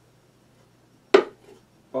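A single sharp knock about a second in, as the hollow wooden body of a ukulele kit is set down, followed by a faint second tap.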